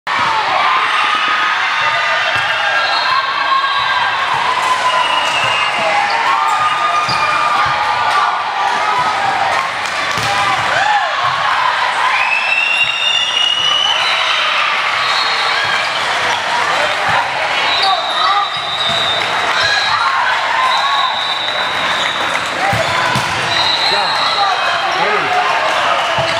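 Indoor volleyball game in a gym hall: a steady din of many overlapping voices calling and chattering, with high shoe squeaks on the court and thuds of the ball being played.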